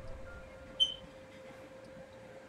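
A lull: a faint steady hum, with one short high-pitched blip about a second in.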